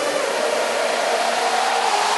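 Psytrance build-up: a hissing noise sweep climbs steadily in pitch and grows slowly louder, with the kick drum and bass cut out.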